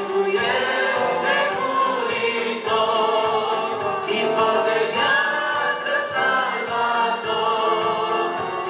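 A church praise group of men and women singing a worship song together into microphones, over amplified accompaniment with a steady beat.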